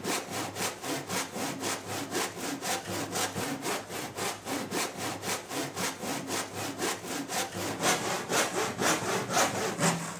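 Hand saw cutting through a thin wooden board in quick, even back-and-forth strokes, about four to five a second.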